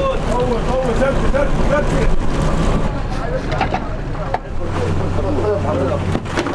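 A fishing boat's engine running with a steady low hum, with men's voices talking over it. The hum grows louder a little over halfway through.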